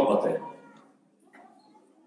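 A man's lecturing voice ends a phrase in the first half-second and trails off into a short pause with only faint, scattered sounds.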